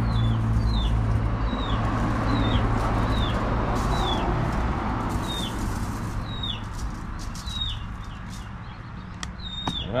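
A bird repeating a short, high, falling call over and over, a little more than once a second, over a steady low hum and a broad rushing background noise.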